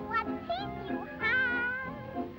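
Early-1930s cartoon soundtrack: a high, squeaky singing voice over band accompaniment, with two short sliding notes and then a long wavering held note in the second half.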